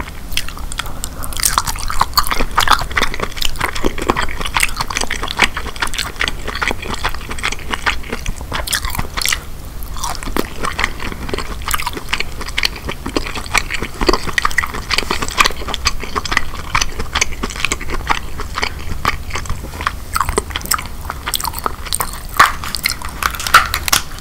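Close-miked chewing of king crab meat coated in Alfredo sauce: wet mouth clicks and smacks with a soft crunch. Near the end there is a run of sharper crackles.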